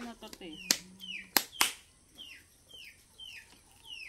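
A bird chirping a string of short falling notes, about two a second, with a few sharp clinks of spoons against bowls in the first half.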